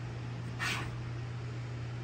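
A steady low hum, with a short breathy hiss a little over half a second in.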